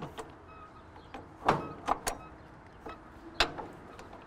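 Gear shift lever of an old tractor, engine off, being moved through its gears with the clutch pushed in: a few metallic clunks and clicks, the loudest near the end.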